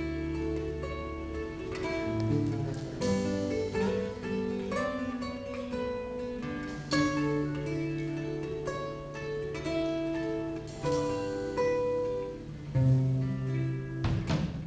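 Live acoustic guitar picking a melodic instrumental line over sustained bass guitar notes, with no drums and no singing.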